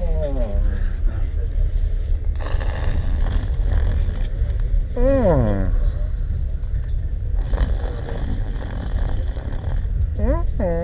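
Passenger train running with a steady low rumble. Over it come two long, noisy breaths a few seconds apart from a man asleep close to the microphone, and a short falling voiced sound about halfway through.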